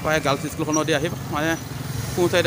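A person talking over a steady low hum of street traffic.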